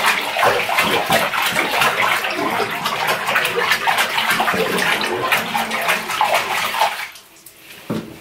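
Shallow soapy water in a bathtub being swished around by hand, a continuous splashing and sloshing that stops about seven seconds in.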